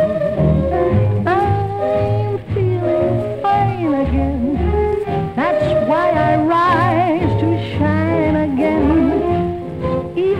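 Instrumental break in a 1946 swing-jazz band recording: a lead melody with heavy vibrato over steady bass notes, about two a second.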